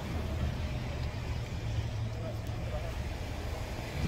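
Chevy Impala engine idling steadily, a low even hum, while the newly replaced radiator draws in coolant.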